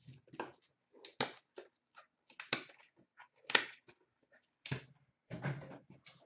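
Handling noise of trading-card packaging on a glass counter: a string of irregular clicks and knocks as items are moved and set down, the loudest about three and a half seconds in. Near the end, a short rustle of cardboard as a hand reaches into the case box.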